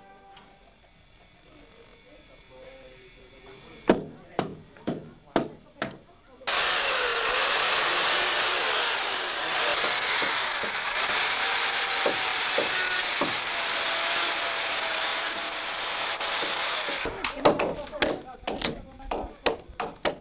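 A few hammer blows on timber, then a power saw cutting through a roof rafter for about ten seconds, then a quick run of hammer blows on the timber near the end.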